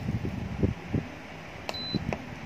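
Electric pressure cooker's control panel giving a short, high, single-tone beep as a menu button is pressed, a click then the beep near the end. Before it, low uneven bumps from handling.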